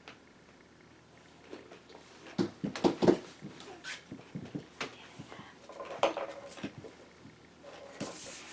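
A person chewing a pickle dipped in peanut butter, with a few short throaty mouth noises, loudest in a cluster about two and a half to three seconds in.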